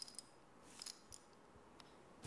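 Near silence with a few faint, light clicks and clinks, bunched about a second in and again near the end.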